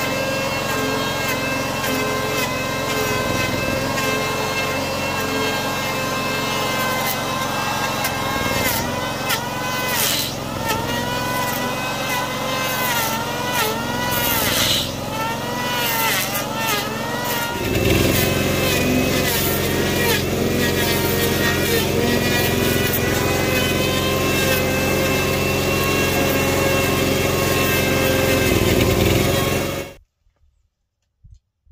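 Electric hand planer shaving a log, with the steady running of the portable gasoline generator that powers it underneath. In the middle stretch the planer's whine repeatedly dips and recovers in pitch as it bites into the wood. A little past halfway the sound grows fuller and louder and stays so.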